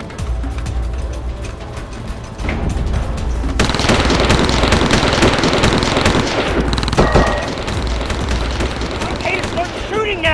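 Rapid automatic rifle fire that starts about a third of the way in, runs for about three seconds, and is followed by a single sharp crack. Background music with a steady low bass plays throughout.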